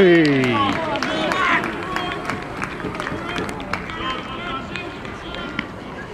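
A handful of spectators and players shouting together as a goal goes in at a small football ground, several voices yelling at once with their pitch falling. Scattered shouts and sharp claps follow.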